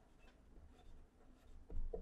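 Faint scratching of a pen writing on paper, with a short, slightly louder sound near the end.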